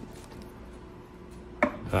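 Quiet room tone with faint small handling sounds from working at a jig-tying bench, then a man's short "uh" near the end.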